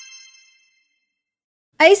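A bright, many-toned chime sound effect, a dream-transition chime, ringing out and fading away within about half a second, then silence until a woman exclaims "Ay" near the end.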